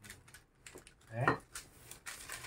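Wooden rolling pin rolled over dough under a sheet of baking paper on a table, with light rustling of the paper and small irregular taps.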